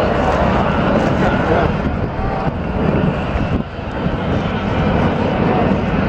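Wind buffeting the microphone as a loud, uneven rumble, with crowd chatter underneath.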